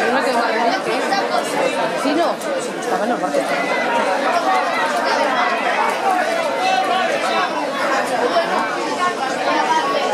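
Chatter of several people talking over one another, with no single voice clear.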